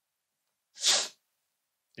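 A single short, sharp burst of breath noise from a person, about a second in.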